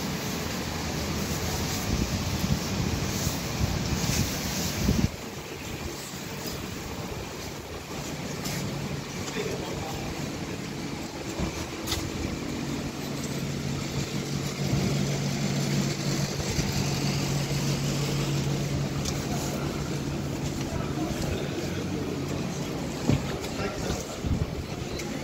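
City street traffic: car engines running and cars passing, with a steady engine hum for several seconds past the middle.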